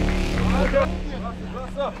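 Men's voices on a baseball field, over a low steady hum.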